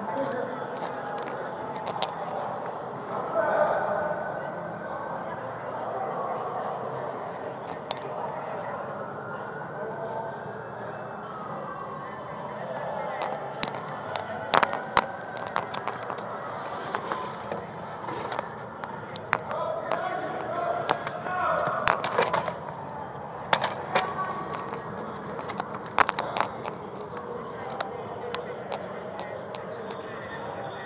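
Muffled, indistinct voices, with rubbing and scattered sharp clicks as the body camera brushes against the wearer's clothing and gear.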